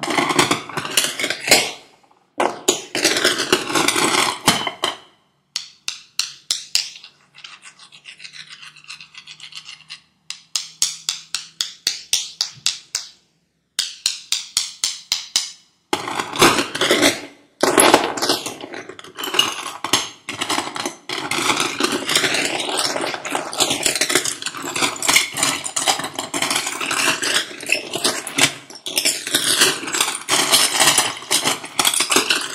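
Seashells rattling and clicking against one another as they are handled. There are dense bursts of rattling, then a stretch of sparser single clicks with short breaks, then a continuous busy rattle through the second half.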